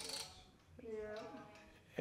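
An Anri carved-wood music box being wound, its spring ratchet clicking, then a few faint thin notes from the movement. It is only half working, its mechanism a little off its base.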